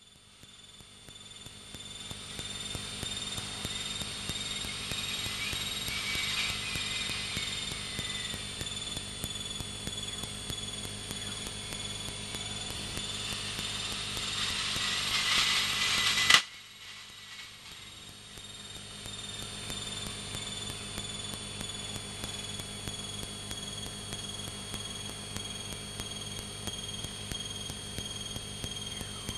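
Piel Emeraude light aircraft's engine and propeller noise in the cockpit during an aerobatic manoeuvre, with a steady high whine drifting slowly in pitch. It builds gradually, drops off suddenly with a click about 16 seconds in, then runs on steadily at a lower level.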